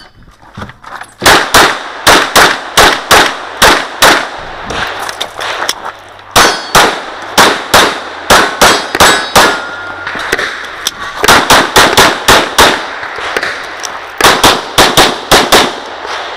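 Glock 34 9mm pistol fired in fast strings, the sharp shots coming a few per second in bursts of about three to eight, with short pauses between bursts. The first shots come about a second in.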